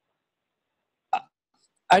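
Silence on a video-conference audio line, broken about halfway by one very short vocal sound, then a man starts speaking just before the end.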